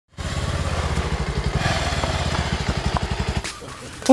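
Motorcycle engine running with a rapid, even exhaust beat, fading away about three and a half seconds in.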